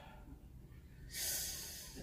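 A man's breath blown out hard through the nose close to the microphone, starting about a second in and lasting about a second, a nervous exhale.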